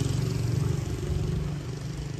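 A small motorcycle engine running with a steady low hum of rapid firing pulses, growing fainter over the two seconds.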